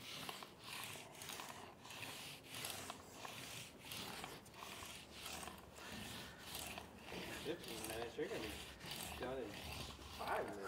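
Paint roller spreading red primer over the rusty steel bed of a dump trailer: a soft, faint rubbing swish with each back-and-forth stroke, in a steady rhythm of roughly one to two strokes a second.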